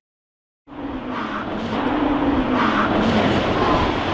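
A brief dead silence, then a rally car's engine running hard out of sight, growing steadily louder as it approaches.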